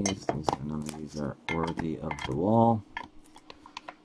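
Hard clear plastic card holders clicking and clacking against each other as they are handled. A voice sounds in several short wordless stretches over the first three seconds, loudest near the end of the third second.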